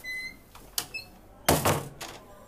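A wooden door with a brass mail slot and knob swinging shut: a short squeak at the start, two light clicks, then a loud thud as it closes about a second and a half in.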